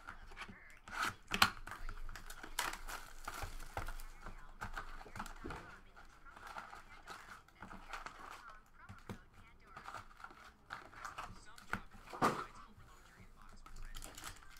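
A cardboard trading-card box being opened and its foil card packs handled, with irregular crinkling and tearing of foil wrappers and handling clicks; the sharpest clicks come about a second and a half in and near the end.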